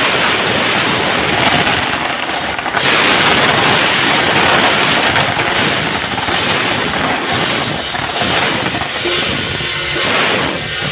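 A string of firecrackers crackling densely over loud temple-procession percussion of drums, gongs and cymbals; the crackle swells about three seconds in.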